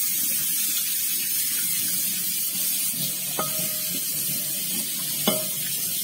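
Tap water running steadily onto a glass plate in a stainless steel sink as the plate is rinsed. Two short clinks of the glass plate, about three and a half and five seconds in.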